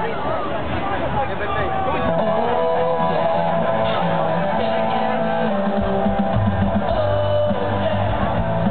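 Live rock band starting a song: electric guitar opens alone, and the full band with bass and drums comes in about six seconds in, heard from within the crowd.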